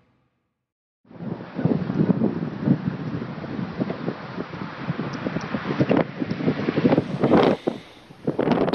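Wind buffeting the microphone in rough, irregular gusts, with vehicle road noise beneath, starting about a second in.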